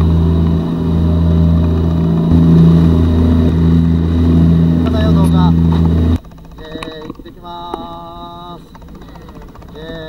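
A boat engine running steadily under way, loud and low-pitched, until it cuts off suddenly about six seconds in. After that, quieter deck sound with people's voices.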